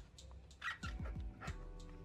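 Soft background music with held tones and several low drum thumps, plus a short higher-pitched sound a little over half a second in.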